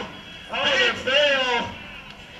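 A man's voice in a short burst of race commentary or exclamation, about a second and a half long, starting about half a second in.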